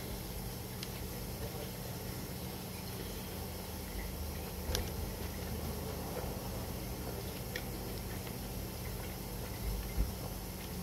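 A man chewing a mouthful of burger close to the microphone, with a few faint wet mouth clicks, over a steady low hum.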